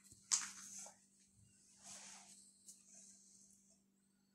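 Hot oil sizzling around cheese-dough fingers deep-frying in a pan as a spoon moves them: a sharp burst of sizzle about a third of a second in, a softer one around two seconds, and faint otherwise, over a low steady hum.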